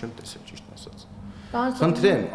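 A man speaking to reporters: a short pause in his speech, then his voice picks up again about one and a half seconds in.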